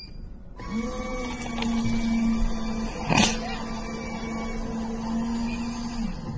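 Coffee vending machine brewing and dispensing after its start button is pressed: a steady motor hum starts about half a second in and stops near the end, with one short sharp noise about three seconds in.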